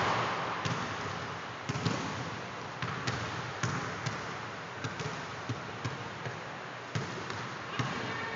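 Basketballs bouncing on a hardwood gym floor: about a dozen irregularly spaced thuds, each echoing in the large gym.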